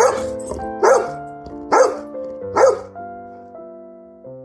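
A yellow Labrador barks four times, about once a second, over soft piano music.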